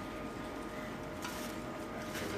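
Quiet room tone: a steady hiss with a faint steady hum, and one soft click a little over a second in.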